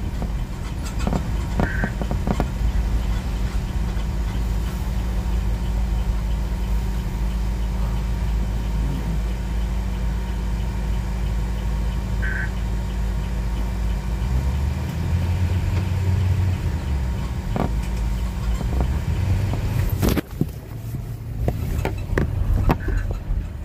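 Car driving slowly, engine and tyre rumble heard from inside, with a steady low hum. A little past the middle the rumble rises in pitch for a couple of seconds. About two seconds before the end the sound changes suddenly to a thinner, quieter rumble.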